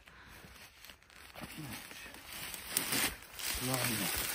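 Rustling and crinkling of a padded jacket and handling noise as a man climbs down holding a cock pheasant against his chest, building up after a quiet first second, with a short low voiced sound near the end.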